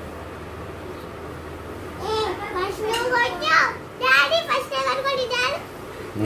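Young children's high-pitched voices talking and vocalizing, starting about two seconds in, over a faint steady low hum.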